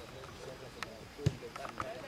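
Faint voices of spectators talking at a football match, with two short thuds about a second in, the second the stronger, of the football being kicked.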